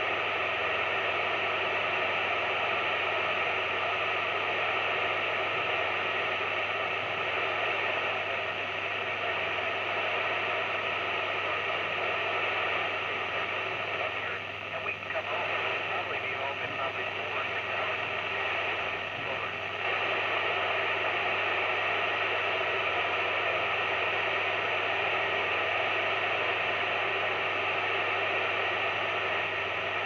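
Steady hiss from a Yupiteru multi-band scanner on the ISS 145.800 MHz FM downlink with no signal coming through, the squelch open between transmissions. The hiss wavers and dips briefly about halfway through.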